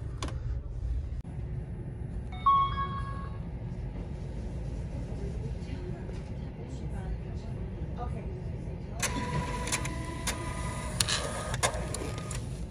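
Library self-checkout kiosk giving a short electronic beep about two and a half seconds in. Near the end its receipt printer runs for about three seconds, feeding out the receipt.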